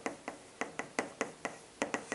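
A marker writing on a chalkboard: a string of short, irregular taps and clicks, about three a second, as the tip strikes and lifts off the board.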